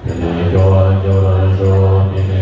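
Tibetan Buddhist monks chanting prayers together in low voices, holding long steady notes. The chant cuts in suddenly at the start.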